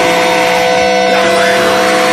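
A metal recording in a break: the drums and bass drop out, leaving a few sustained held notes ringing over a thinner wash of sound.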